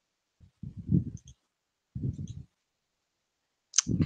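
Muffled clicks and thumps of someone working a computer at a desk, in two short clusters about a second apart, with one sharper click near the end.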